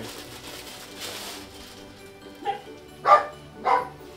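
Clear plastic shipping bag crinkling as jeans are pulled out of it. Then a dog barks three times, the last two loudest, about half a second apart.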